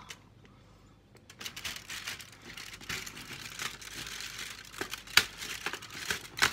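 Cardboard and plastic of a chocolate advent calendar crinkling and crackling as a door is opened and the chocolate pushed out, starting about a second in, with a sharp click about five seconds in.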